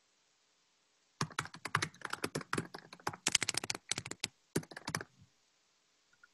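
Typing on a computer keyboard: a quick run of key clicks starting about a second in and lasting about four seconds, with a brief pause near the end.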